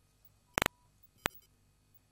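Two sharp clicks: a doubled one with a faint brief tone about half a second in, and a single one about 0.6 s later, over faint background hiss.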